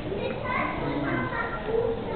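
Indistinct chatter of other people, with a child's high voice standing out.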